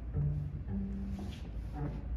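Double bass played with the bow: three slow sustained notes, the middle one higher and longest, the last one short.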